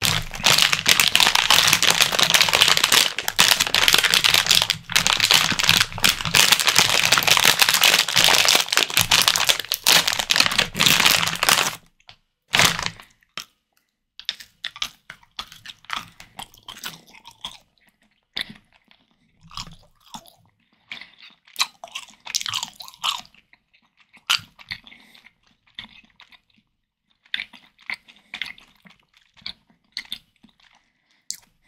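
Plastic candy bags crinkling loudly as hands rummage through them for about twelve seconds, then close-miked chewing of jelly candy: quieter, irregular wet mouth sounds.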